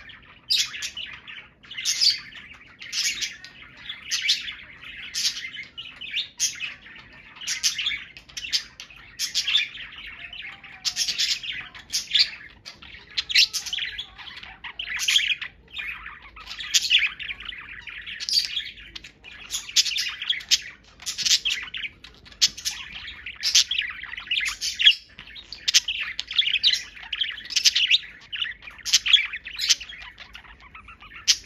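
Pet budgerigars chattering to each other: a continuous string of short, high chirps and warbles, about one to two a second.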